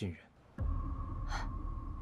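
A low, steady drone with a held higher tone starts suddenly about half a second in. A short, sharp gasp comes a little under a second later.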